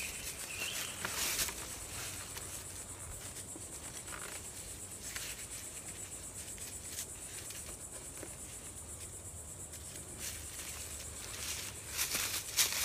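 A steady high-pitched insect chorus, with a few brief rustles of leaves and poncho fabric as the shelter's corners are tied down.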